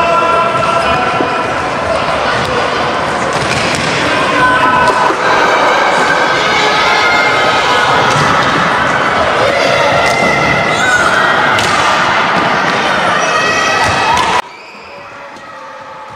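Live sound of an indoor field hockey game in a reverberant sports hall: young players' shouts and calls over the knocks and thuds of sticks, ball and boards. It cuts off abruptly about fourteen seconds in.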